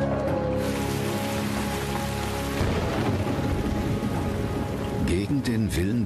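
Heavy rain pouring down, the hiss rising in about half a second in, over held tones of background music; a low rumble joins underneath from about two and a half seconds in.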